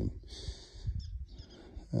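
A man's voice says one short word, then a pause filled by a soft breath drawn in over about half a second, with faint low background sound.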